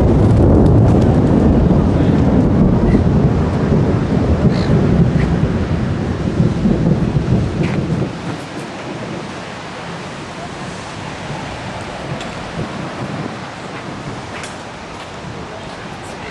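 Wind buffeting a camcorder microphone: a loud, low rumbling noise for the first half that drops suddenly about halfway through to a quieter, steady hiss.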